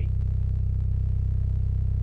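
Kicker Comp C 12-inch single 4-ohm subwoofer in a sealed box playing a steady 32 Hz test tone at about 187 watts, a deep continuous bass note with a buzzy edge and a fast even pulsing.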